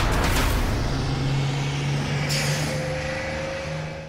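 City bus engine running with a steady low drone, and a hiss of air brakes a little past two seconds in. A music sting fades out in the first moment.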